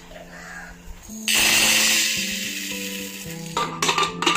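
Dry yellow split lentils poured into an aluminium pressure cooker: a sudden loud rattling rush about a second in that tails off over the next two seconds. A few metal clinks follow near the end.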